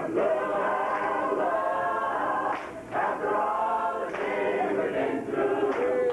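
Mixed adult gospel choir singing a cappella, many men's and women's voices together in held chords, with a short break between phrases a little under three seconds in.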